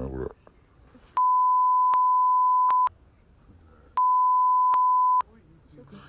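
Two steady, loud 1 kHz censor bleeps, the first about a second and a half long and the second about a second, each starting and stopping abruptly. They cut over the speech in the footage, with faint murmuring between them.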